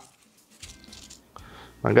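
Faint crackle and rustle of a flaky, freshly baked pain au chocolat being handled on a baking tray, with a couple of light taps.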